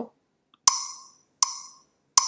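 Two ticks of a web rhythm exercise's click track, about three-quarters of a second apart, each sharp with a short ringing tail. They are the first beats of the four-beat count-in that comes before the rhythm is tapped out.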